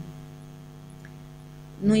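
Steady low electrical hum, mains hum carried on the recording, with evenly spaced buzzy overtones and no change in level. A woman's voice comes back in near the end.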